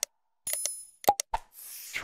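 Animated subscribe-button sound effects: short clicks and pops, a ringing bell-like ding about half a second in, then a whoosh near the end.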